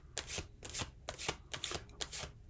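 Deck of tarot cards being shuffled by hand: a series of short papery slaps and riffles, about two or three a second.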